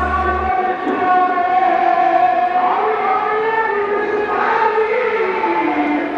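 A voice chanting in long, drawn-out notes that slowly rise and fall in pitch, with few breaks.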